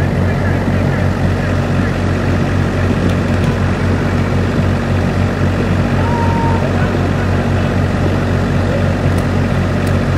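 A steady, loud, low mechanical hum like a running engine, unchanging throughout, with a few faint sharp pops.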